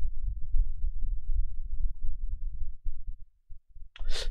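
Low, uneven rumble with no voice in it, dropping out briefly near the end.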